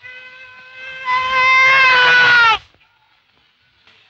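A man's long, high-pitched holler, held on one note for about two and a half seconds. It gets louder about a second in and drops in pitch just as it breaks off.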